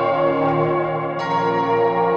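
Outro music of bell-like chimes ringing in sustained, overlapping tones, with a fresh strike of higher notes a little past a second in.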